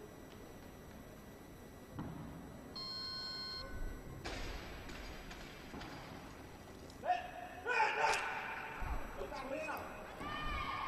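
A short electronic beep about three seconds in. Then, as the barbell is pulled and cleaned to the shoulders at about seven seconds, there is a thud and loud shouting voices for a couple of seconds.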